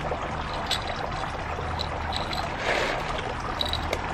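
Steady trickling water, with a few light clicks of clay LECA balls against a glass jar as a plant is worked into it.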